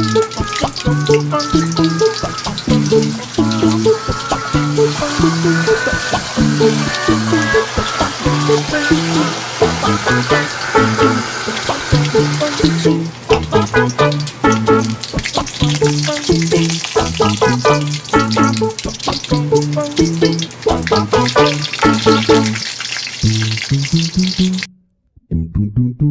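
Spring rolls frying in oil in a wok, a steady sizzle that thins out about halfway through, under background music with a bouncing bass line and beat. Everything cuts out briefly about a second before the end.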